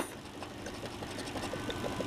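The box end of a small metal wrench scraping rapidly across a scratch-off lottery ticket, rubbing the coating off a number spot: a faint, fast scratching.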